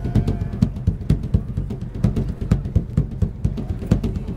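Hand drum played with bare hands: a steady, quick rhythm of deep strikes with sharper slaps mixed in.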